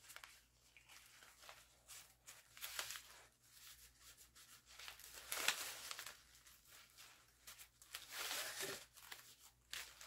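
Faint, intermittent rustling of ribbon being looped and pinched into a bow, in short scratchy bursts.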